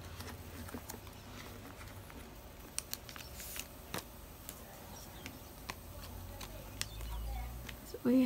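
Light plastic crinkles and scattered soft clicks as photocards are slid out of clear plastic binder pocket sleeves, with a faint low rumble that swells briefly near the end.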